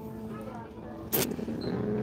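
Soft, low-level talking in a store, with a brief sharp noise a little past a second in.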